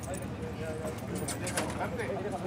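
Faint, distant men's voices, with a few light clicks or knocks about one and a half seconds in.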